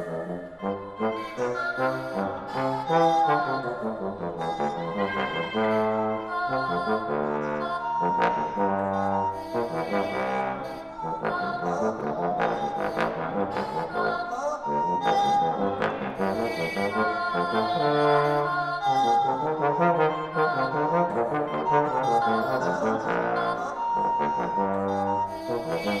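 Bass trombone playing a continuous line of classical-style notes, moving between its low and middle range.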